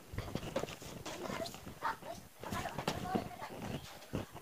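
A length of printed dress fabric rustling and flapping as it is lifted, spread and shaken out by hand for folding. Faint, irregular, with a faint voice-like sound in the background near the end.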